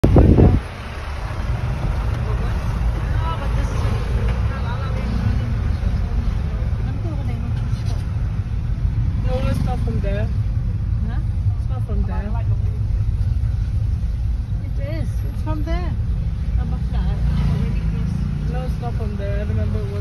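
Car cabin noise while driving in slow traffic: a steady low engine and road rumble, with a voice talking over it. A brief loud burst comes right at the start.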